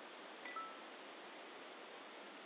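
Faint, steady outdoor hiss with no clear source, with one brief high tick and a short faint whistle-like tone about half a second in.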